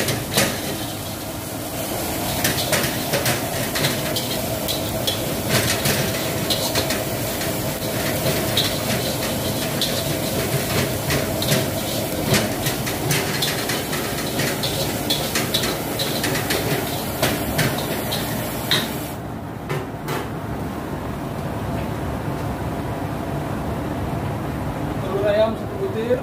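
A metal spatula scraping and clacking against a wok while onions are stir-fried, over the steady noise of a gas wok burner running full and the frying sizzle. The spatula strokes come thick and fast for most of the time and thin out near the end.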